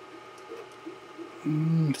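Faint room background for about a second and a half, then a man's drawn-out, held hesitation sound leading into speech.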